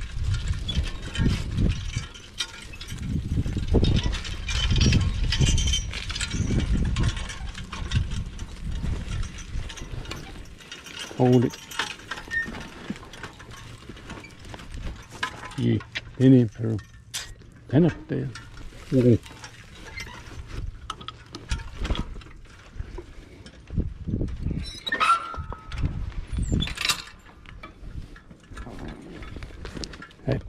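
A mule team pulling a riding plow through garden soil: low rumbling and the rattle of the plow's metal frame and harness chains, with the driver giving a handful of short, low voice calls to the mules in the middle. A brief high whistling sound comes near the end.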